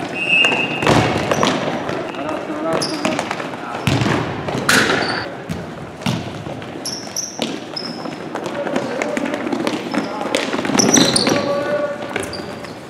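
Indoor futsal play on a hardwood gym floor: the ball being kicked and thudding, sneakers squeaking in short high chirps, and a constant din of indistinct shouting voices from players and spectators, echoing in the gym.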